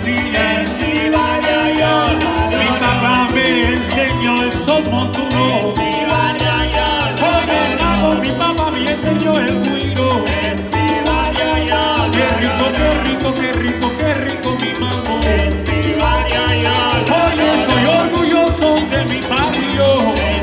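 A live salsa band plays a dance number throughout, with two trombones over piano, bass, and conga, bongo and timbales.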